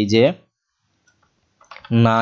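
A spoken voice briefly at the start and again right at the end, with a few faint computer keyboard key clicks just before the voice returns as a word is typed.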